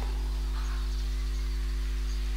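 Steady low electrical hum with a stack of even overtones above it, the background noise of the recording.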